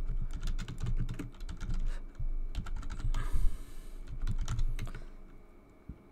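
Typing on a computer keyboard: a quick, uneven run of keystrokes entering an email address, which stops about five seconds in.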